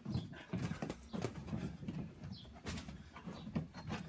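Boxing footwork and gloves during sparring: irregular thuds of feet on hollow wooden decking, several a second, mixed with the slaps of gloved punches.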